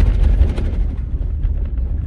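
Vehicle driving over a rocky gravel road: a steady low rumble of tyres and suspension on the stones, with sharp knocks from rocks, the strongest right at the start.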